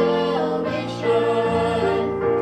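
A man and a woman singing a slow duet, holding long notes, over a piano accompaniment.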